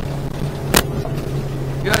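Suzuki outboard running steadily near full throttle at about 5800 rpm, a steady drone heard from inside the boat's hardtop cabin. A sharp knock comes about three-quarters of a second in.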